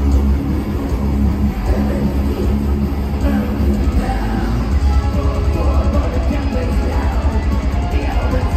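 Live thrash metal band playing loud and without a break: distorted electric guitars and drums, recorded from the crowd with a heavy, dominant low end.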